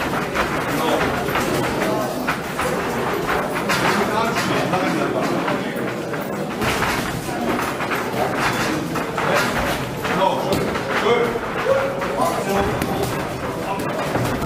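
Several people talking and calling out over each other around a boxing ring, with scattered short thuds from the boxers' gloves and footwork on the ring canvas.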